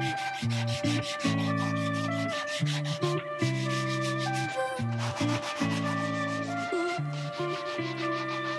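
Sanding block rubbed back and forth by hand over a wooden board, a steady scratchy rubbing, with background music of sustained low notes and a melody.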